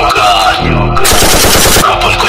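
Machine-gun fire sound effect dropped into a dance remix: a rapid, dense burst of shots lasting just under a second, starting about halfway through, over the track's bass.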